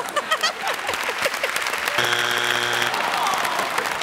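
Studio audience laughing and applauding, with a steady electronic game-show buzzer sounding for about a second midway and cutting off sharply. This is the wrong-answer strike buzzer on Family Feud.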